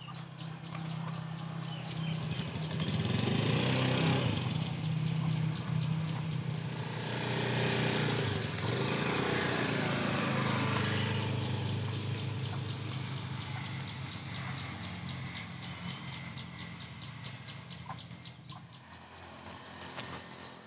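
Motor vehicle engines passing by, the low engine hum swelling twice and then fading away, with a fast, regular high ticking over it.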